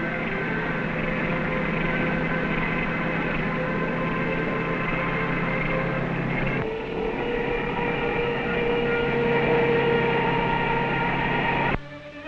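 IEL two-man gasoline chainsaw running steadily while cutting through a large tree trunk, a continuous engine drone. Its pitch shifts abruptly about six and a half seconds in.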